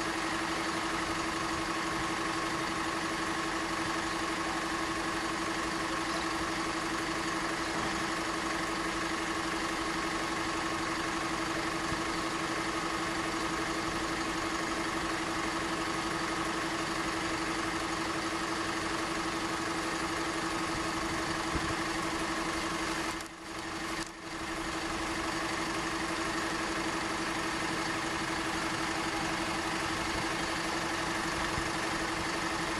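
Vehicle engines idling steadily, with a constant droning tone underneath. The sound briefly drops out twice, a little over three-quarters of the way through.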